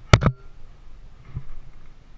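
Two quick hard knocks close together, something hard striking the rock at close range as the climber moves up a rock chimney, followed a little over a second later by a softer thump.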